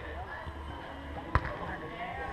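A single sharp smack of a footvolley ball struck by a player, about two-thirds of the way in.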